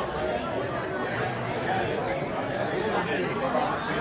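Crowd chatter: many people talking at once, indistinct, with no single voice standing out.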